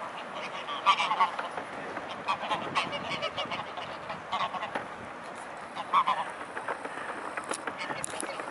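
A flock of waterfowl calling: several short, nasal calls come at irregular intervals over a steady background of flock noise.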